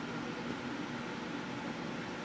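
Steady, even hum and hiss of a fan or machine running, with no distinct knocks or clicks.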